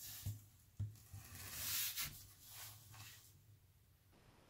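Faint handling noise of hands on an Echo Dot smart speaker and its power cord on a tabletop: a couple of soft knocks in the first second, then a rustling rub near the middle.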